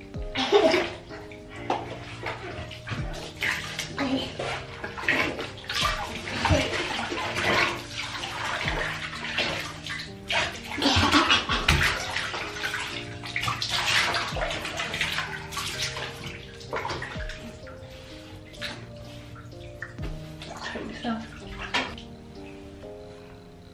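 Water poured from a cup over a toddler's head in a bathtub to rinse her hair, splashing into the bath water again and again, over background music.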